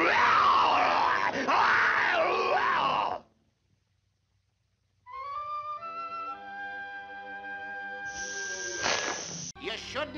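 A cartoon wrestler's loud, drawn-out yell with its pitch wavering up and down, cutting off abruptly about three seconds in. After about two seconds of silence, orchestral music begins with held brass and woodwind notes, and a short burst of noise comes near the end.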